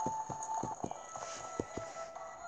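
Cartoon sound effect of a herd of pigs' hooves running: a quick patter of soft thuds, about five or six a second, over quiet background music.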